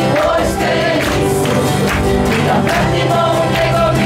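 A live praise-and-worship song: several voices singing together, backed by strummed acoustic guitars and a keyboard, with a steady rhythm.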